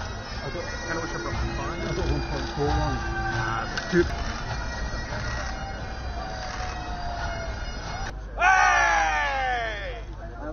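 Scottish bagpipes playing with steady drones over crowd noise. After a cut near the end, a loud long shout sliding down in pitch.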